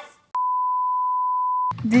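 A single steady electronic beep, a pure tone about a second and a half long that starts and stops abruptly: a censor bleep.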